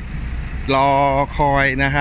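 Mostly a man talking, over a steady low rumble of vehicle engines running.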